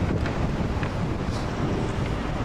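Wind buffeting the microphone: a steady, uneven low rumble, with a few faint clicks.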